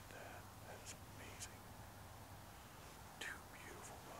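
A person whispering faintly: a few short hissy syllables, over a low steady hum.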